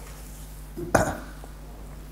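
A single short throat sound from a man about a second in, muffled behind the hand he holds over his mouth, over a low steady room hum.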